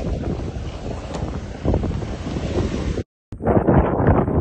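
Wind buffeting a phone's microphone on an open sailboat on the water: a loud, steady rumble that cuts off suddenly about three seconds in.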